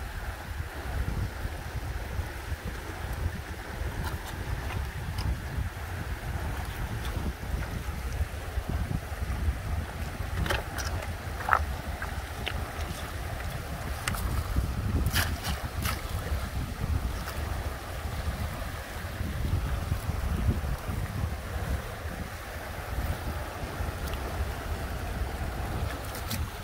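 Shallow river rushing over rocks and small rapids, a steady hiss, with wind buffeting the microphone as a low rumble. A few short sharp clicks come around the middle.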